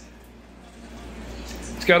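Danby DDW621WDB countertop dishwasher running mid-cycle, pretty quiet: a faint steady wash noise over a low hum.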